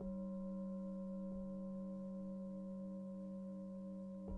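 Singing bowl struck at the start and ringing on in a low, sustained hum with higher overtones, with a softer strike about a second and a half in.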